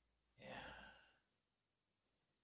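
A man's sigh: one breathy exhale starting about half a second in and fading away over under a second.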